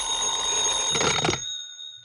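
Telephone bell ringing in one long continuous ring that stops about one and a half seconds in, its tone dying away after.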